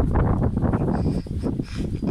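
Wind buffeting the phone's microphone: a rough, unsteady rumble of noise.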